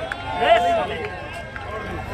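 Spectators talking close by, a short bit of speech about half a second in, over the low background noise of a stadium crowd.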